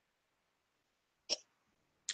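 One short, sharp breath sound from a person, like a hiccup or a quick sniff, about a second in, over near-silent room tone.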